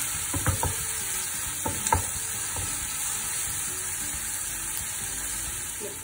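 Sliced onions and green chilies sizzling steadily in hot oil in a nonstick pan as they are sautéed, with a spatula stirring them and knocking against the pan a few times in the first two seconds.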